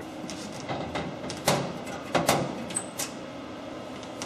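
Several sharp knocks and clacks from hardware being handled, the four loudest coming one after another between about one and a half and three seconds in.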